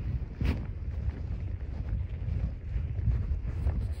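Wind buffeting the action-camera microphone, a gusty low rumble, with a brief knock about half a second in.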